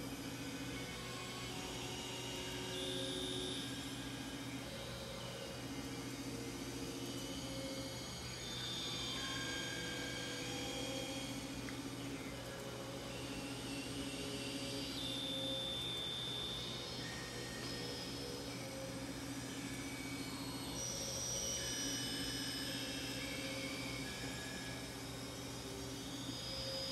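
Synthesizer playing slow, overlapping held tones that change pitch every second or two, over a steady low hum.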